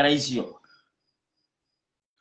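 A man's voice speaking for about half a second, then silence. A faint, high, pulsing sound trails under the end of his words and fades out about a second in.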